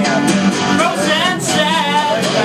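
Live music: a strummed acoustic guitar with a voice singing over it.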